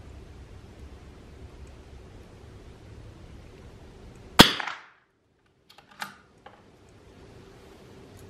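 .22 LR rimfire rifle firing a single shot about halfway through, a sharp crack with a short ringing tail. About a second and a half later come a few small sharp clicks as the rifle's bolt is worked.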